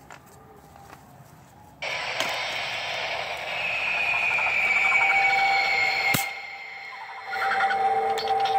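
A Halloween animatronic jump-scare prop going off: its loud sound effect starts suddenly about two seconds in, with a high tone slowly falling in pitch. It cuts off with a sharp click about six seconds in, and a quieter steady tone follows near the end.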